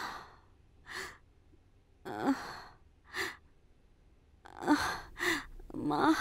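A woman sighing and breathing out in short, breathy sighs, about seven of them roughly a second apart, while her lower back is being rubbed.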